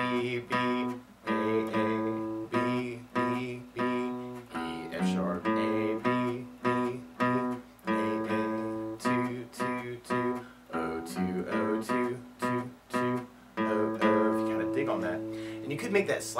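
Acoustic guitar playing a repeated single-note riff low on the neck: three plucks of B on the A string, then open E, F# on the low E string and open A, ringing on and played again several times.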